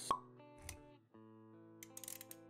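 Intro-animation sound effects over light music: a sharp cartoon-style pop about a tenth of a second in, then a short low thump, then plucked-sounding music notes resuming about a second in.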